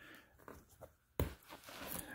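Mostly quiet room with one sharp click a little over a second in, from handling the clip of an elastic mattress corner strap, followed by a few faint handling sounds.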